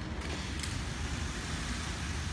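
Automatic labeling machine running: a steady low mechanical rumble from its conveyor and rollers, with a faint click about half a second in.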